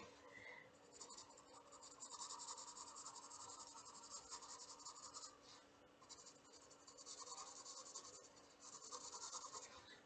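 HB graphite pencil shading on sketchbook paper: faint scratching strokes in stretches, with short pauses about six seconds in and again a little before the end.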